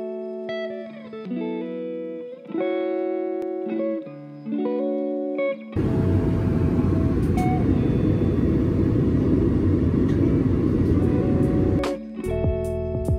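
Guitar-led background music for about the first half, then a sudden cut to the loud, steady rush of an airliner cabin in flight, with the music faint beneath it. The rush stops near the end as the music comes back up.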